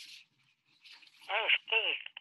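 A person's voice saying two short syllables about a second and a half in, after a faint brief noise at the start.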